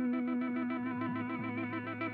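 Gibson Custom Shop 1958 reissue Korina Flying V electric guitar played through an amplifier: a long note rings on while quick notes are picked over it in a steady rapid rhythm, about nine a second.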